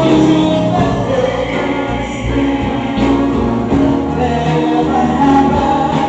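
A live soul band playing, with held chords that change about once a second over bass and drums.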